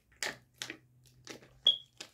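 Drinking from a plastic water bottle: a few gulps and crinkles of the thin plastic about every half second, ending with a short, sharp squeak near the end that is the loudest sound.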